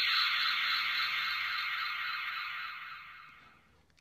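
Ultra Replica Beta Capsule toy playing Ultraman's transformation sound effect from its built-in speaker, set off by its A button. It is a thin, bright hiss-like sound that slowly fades away near the end.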